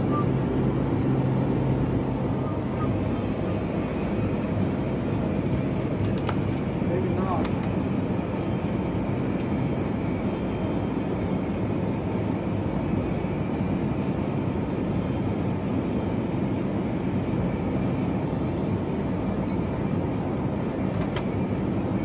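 Steady hum and rush of a supermarket's open refrigerated meat case and store air handling, with a few faint clicks of plastic-wrapped meat packages being picked up and handled.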